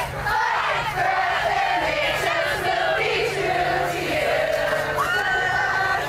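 A crowd of students yelling and chanting together, many voices overlapping without a break.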